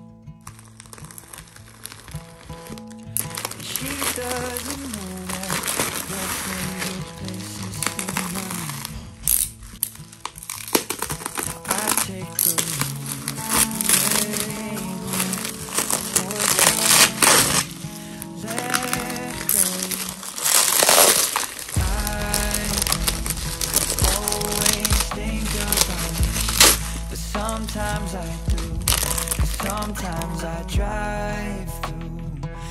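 Plastic mailer bag and bubble wrap crinkling and rustling in bursts as a parcel is opened by hand, over background music; a deeper bass part joins in near the end.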